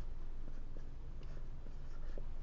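An Expo dry-erase marker writing on a small whiteboard, its felt tip making quiet scratching strokes.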